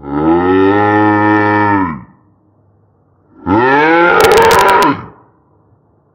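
Two long, low animal calls, each about two seconds, rising and then falling in pitch. The second call crackles near its end.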